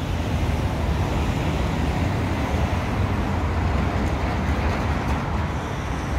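Steady city traffic noise: a continuous low rumble of passing cars with road hiss.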